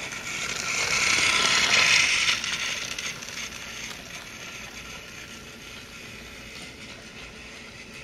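Battery-powered Thomas & Friends TrackMaster toy train running along its plastic track, its small motor and gears whirring. It grows louder, is loudest about two seconds in, then fades to a quieter steady run.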